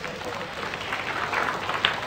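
Studio audience applauding, with a few voices among the clapping.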